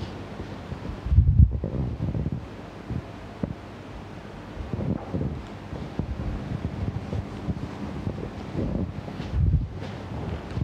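Whiteboard being wiped clean: irregular low rumbling and rustling bursts, strongest about a second in and again near the end.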